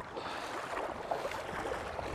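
Water sloshing and splashing around two people's wellington boots as they wade steadily through shin-deep lake water.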